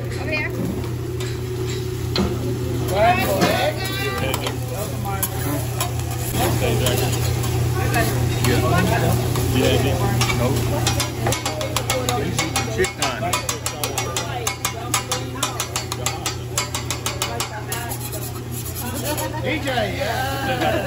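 Metal hibachi spatulas chopping and scraping on a flat-top griddle as rice and scrambled egg are mixed, rapid sharp clicks through the middle of the stretch, over diners' chatter and a steady low hum.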